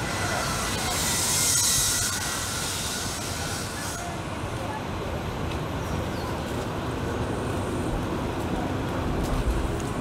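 Busy city street ambience: a steady low traffic rumble with faint background voices, and a hiss that swells and fades in the first two seconds.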